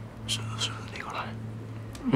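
Whispered speech: a few short, breathy words over a steady low hum.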